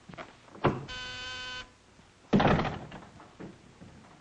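A short office buzzer sounds once for under a second, the intercom signal of a visitor waiting, between a light knock and a louder door thump about two seconds in.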